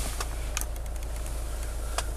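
Steady low hum in a car cabin, with a few faint ticks.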